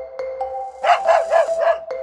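A short musical jingle of bright struck notes, with a dog barking four times in quick succession about a second in; the barks are the loudest part.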